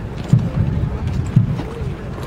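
Low, heavy thumps about once a second, the slow beat of a marching military funeral procession, over a steady rumble of wind on the microphone.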